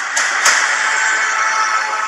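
Film trailer soundtrack: a loud swell of music and sound-effect noise with sustained tones, opened by a few sharp clicks, held steady and easing slightly near the end.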